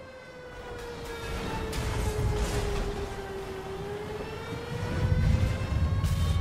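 A siren sound effect wailing on one held note that slowly sinks and then rises again, over a low rumble that swells toward the end.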